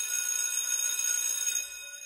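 High, steady bell-like ringing added to the slideshow's soundtrack, fading out about one and a half seconds in.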